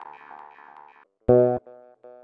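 Pulse-wave bass from a subtractive wavsynth on a Dirtywave M8 tracker, run through lowpass filter, chorus, reverb and delay: the echoing tail of earlier notes fades out, then one short bass note sounds just past a second in and is followed by fainter delay repeats.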